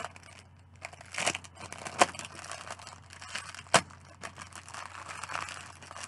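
Clear plastic packaging being crinkled and torn open by hand: irregular crackling with two sharp snaps, about two seconds in and a little before four seconds.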